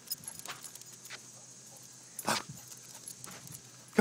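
A dog giving one short, sharp call a little over two seconds in, with faint scattered ticks and rustles around it as it dashes about.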